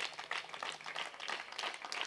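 Faint, scattered clapping from a group of onlookers: a dense patter of irregular hand claps.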